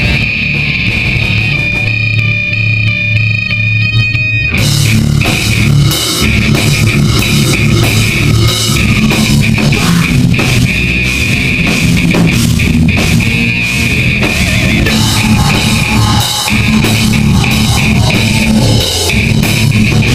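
Live metal band playing loud: distorted electric guitar riffing over bass, the drum kit and cymbals joining in about four and a half seconds in, after which the full band plays on.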